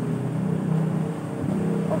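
A low, steady engine drone, as from a motor vehicle idling or running nearby.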